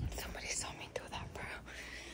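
Quiet, breathy whispered speech close to the microphone, with no words clear enough to make out.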